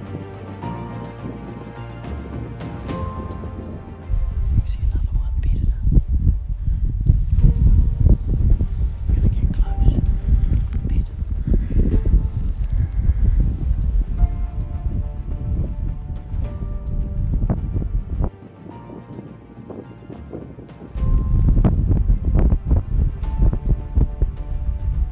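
Background music, overlaid from about four seconds in by loud, uneven wind buffeting on the microphone. The wind eases for a few seconds near the end, then returns.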